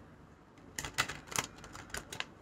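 A deck of tarot cards being shuffled by hand: a run of quick, sharp clattering snaps of the cards about a second in, and another near the end.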